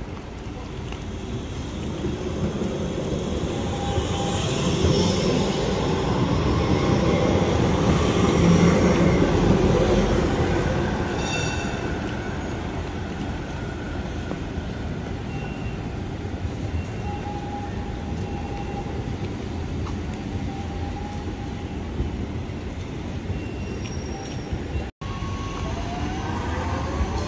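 City tram running on street track: its running noise swells to a peak about eight to ten seconds in and then fades as it passes, followed by a few brief thin squeals from the wheels on the rails.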